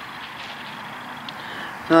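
Steady, even outdoor background noise with no distinct events; a man's voice starts right at the end.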